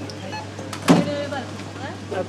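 A steady low hum with short fragments of a person's voice, the loudest about a second in.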